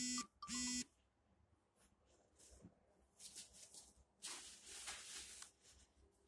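Two short buzzing electronic beeps in quick succession at the start. Later there is soft scraping and rubbing as sheets of mosaic tile are pressed onto mortar on the wall.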